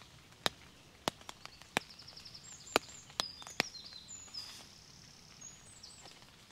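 Irregular sharp taps of heavy raindrops striking the tent fabric overhead, about seven in the first four seconds. From about two seconds in, a bird sings high, thin, trilling phrases.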